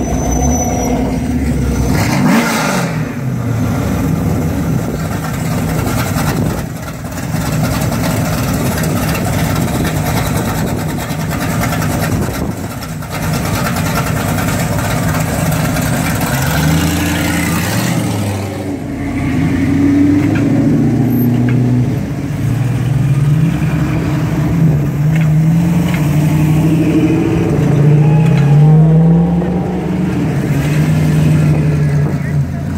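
Classic cars rolling past slowly with engines running. From about halfway through, one car's engine is revved up and down again and again.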